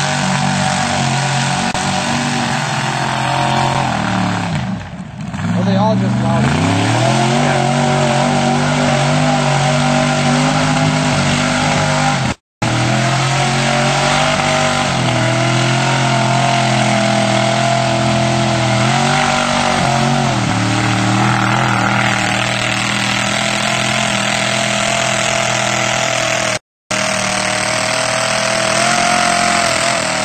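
Lifted mud-bog truck's engine running hard at high revs as it churns through a mud pit. The revs drop and climb back up about five seconds in and again around twenty seconds. The sound cuts out completely for a moment twice.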